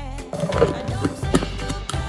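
Background music playing, with a few short knocks in the middle.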